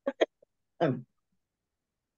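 A person clears their throat in two quick, short bursts, followed about a second later by a brief spoken "oh."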